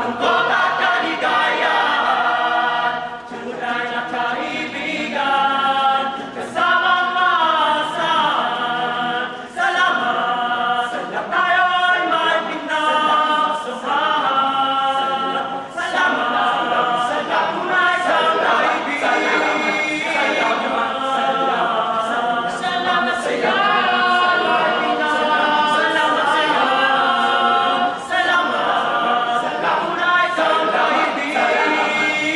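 Boys' choir singing a cappella in several voice parts, with no instruments, the phrases gliding up and down in pitch. Short dips in loudness mark the breaks between phrases.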